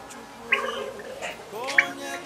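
A woman speaking in a choked, wavering voice, with sharp hissing breaths about half a second in and near the end.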